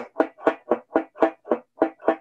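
Six-string banjo with its strings muted by the left hand: short, damped picked strokes in an even rhythm, about four a second.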